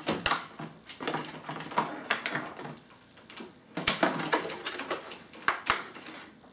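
Crinkling and clicking of a clear plastic blister pack being handled and pulled at, in irregular spells with a quieter stretch about halfway through.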